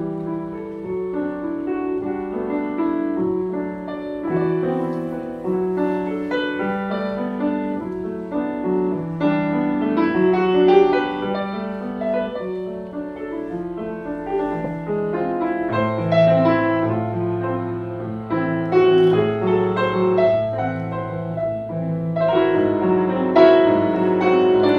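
Grand piano playing an instrumental passage, a steady run of melodic notes with chords; deeper sustained bass notes come in about two-thirds of the way through.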